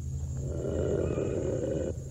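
A monster's roar sound effect: one long raspy roar lasting about a second and a half, over a steady low hum.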